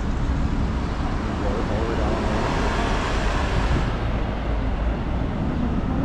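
Road traffic: cars driving through a city intersection over a steady low rumble, with one vehicle passing close and rising then fading about two to four seconds in.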